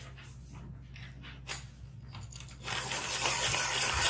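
A few faint rustles, then about two-thirds of the way in a loud, steady, dry scraping or rasping begins, like a hard edge worked against a rough surface.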